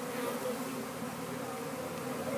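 A swarm of honey bees buzzing steadily: many overlapping, wavering hums at once.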